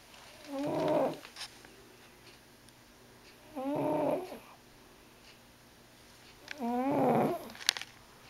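Sleeping overweight white domestic cat snoring loudly: three snores about three seconds apart, each a pitched breath lasting under a second. A sharp click follows just after the third.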